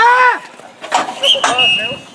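Young players shouting on a ball hockey rink: a loud call that rises and falls at the start, then more calls about a second in. Sharp clacks of sticks and ball come between the calls.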